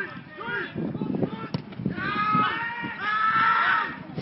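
Voices shouting across a football pitch during play, ending in one long, loud held call. A single sharp knock about one and a half seconds in.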